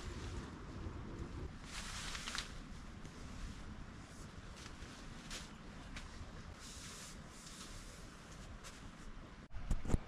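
Faint rustling of tent fabric being handled, in a few short bursts, over a low wind rumble on the microphone.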